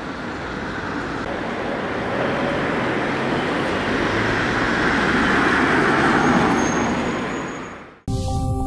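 Street traffic noise, with a motor vehicle coming closer and growing louder until about six seconds in, then dying away near the end.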